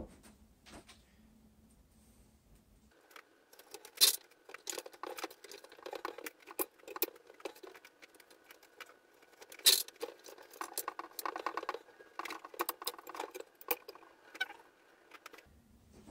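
Near quiet for the first few seconds, then a quick, busy run of rustling, scraping and clicking as polyester tennis string is pulled through the racquet's grommets and the Gamma X-2 drop-weight stringing machine's clamps are worked, with a few sharp clicks standing out.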